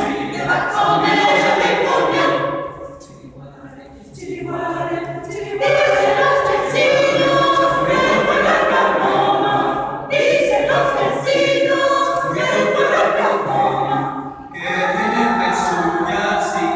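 Mixed choir of men's and women's voices singing a cappella in sustained phrases, with a softer passage about three seconds in.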